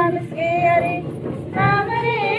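A group of women singing a devotional song together, with a gliding, wavering melody line.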